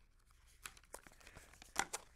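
Sheets of paper rustling as they are handled, a few soft crackles with the loudest pair near the end.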